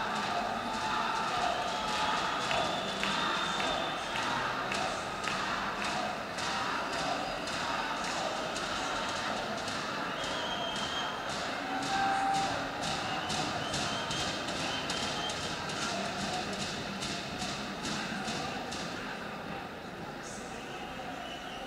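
Hoofbeats of a Colombian trote y galope horse trotting, sharp evenly spaced strikes about two a second, settling into a steady rhythm about five seconds in, over a murmur of crowd voices.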